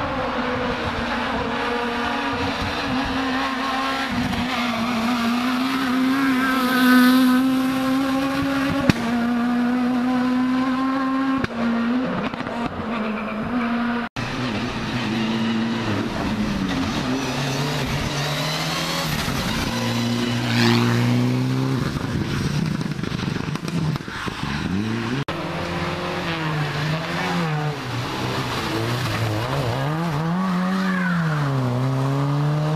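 Rally car engines at hard throttle on a tarmac special stage, in a run of separate passes. The first is a steady high engine note held for several seconds. Later the revs swing up and down again and again as the cars brake, shift and accelerate through the bends.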